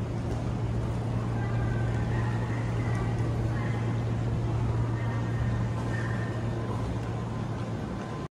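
Kintetsu 22600 series Ace electric train standing at a platform, its onboard equipment giving a steady low hum.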